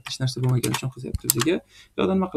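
Computer keyboard typing, a few sharp keystroke clicks, with a person talking over them.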